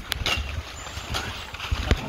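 Rustling and snapping of forest undergrowth with scattered short cracks of twigs, over a low rumble of a handheld phone microphone being jostled while moving through the brush.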